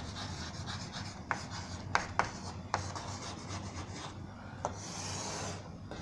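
Chalk writing on a blackboard: scratchy strokes broken by sharp taps as the chalk strikes the board, with a longer scrape near the end.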